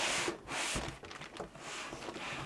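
White foam packing end caps and a plastic bag rubbing and scraping against a cardboard box as the packed unit is lifted out, in about three short hissing rustles.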